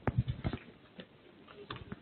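Scattered light clicks and knocks at an irregular pace, several a second, with quiet gaps between them.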